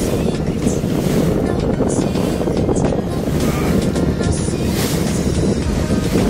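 Wind buffeting the microphone and water rushing and splashing against the hull of a small motorboat moving at speed over choppy sea, with music faintly underneath.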